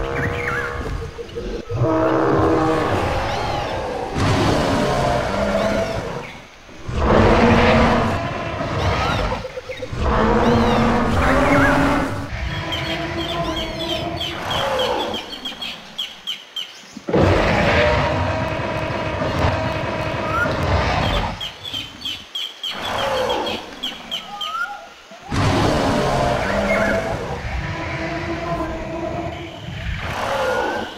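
Dinosaur roar and growl sound effects, coming in long pitched bursts of a few seconds with short pauses between them; a similar passage is heard twice.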